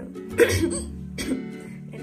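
A woman coughs sharply about half a second in, with a few weaker coughs or throat sounds after, over steady background music.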